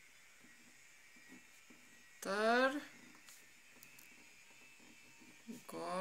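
A woman's voice in two short murmurs without words, each rising in pitch, about two seconds in and again near the end. In between, a ballpoint pen scratches faintly on paper.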